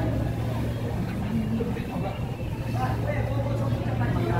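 A steady low engine-like drone, with faint voices in the background.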